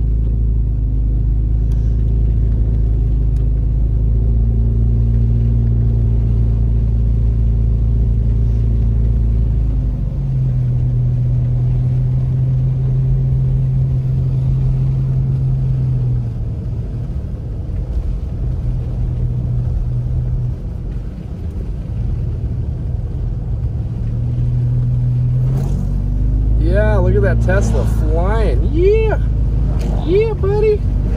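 Car engine and road noise heard from inside the cabin while driving on a snowy road: a steady low drone whose pitch steps up and down a few times with speed. Near the end a voice with gliding pitch comes in over it.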